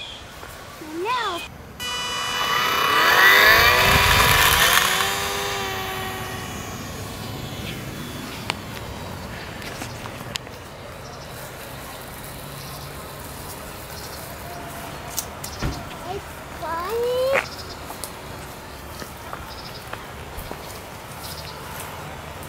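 The small electric motor and propeller of a HobbyZone Champ RC plane whining at high throttle: it starts suddenly about two seconds in, grows loud, then drops in pitch and fades over a few seconds as the plane flies off. Short bursts of voices, a child's among them, come later.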